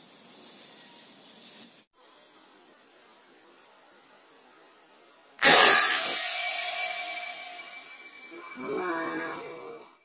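Air rifle shot heard in the replay: a sudden loud crack about five and a half seconds in that tails off over the next couple of seconds, followed by a softer sound near the end.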